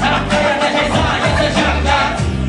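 Live hip-hop music played loud through a concert sound system, recorded from the crowd: a heavy bass line under a steady drum beat.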